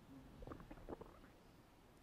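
Near silence: room tone in a pause between sentences, with a few faint brief sounds between about half a second and a second in.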